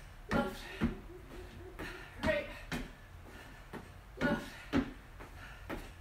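A woman's voice in short, breathless bursts, paired and about every two seconds, in time with weighted step-ups on an aerobic step. A few light knocks from her feet on the step are heard between them.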